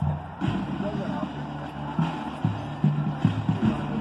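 Marching band brass playing low, held notes with repeated sharp attacks.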